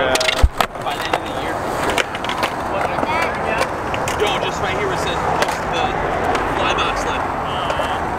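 Skateboard wheels rolling steadily on smooth concrete, with a sharp knock about half a second in and a few lighter clacks.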